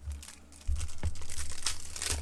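Foil trading-card pack wrapper crinkling and tearing as it is ripped open by hand. The sound starts quietly, then turns into a loud, dense crackle from under a second in.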